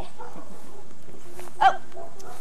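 A puppy giving a single short yip about one and a half seconds in.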